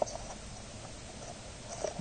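Faint rustling of paper as hands press and handle a folded, glued paper cube.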